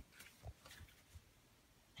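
Near silence: room tone with a short click at the start and a few faint low bumps.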